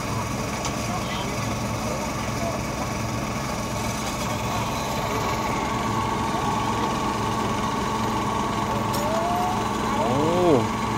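Engine of a crane-equipped flatbed truck running steadily at idle, a constant low drone with a steady whine above it.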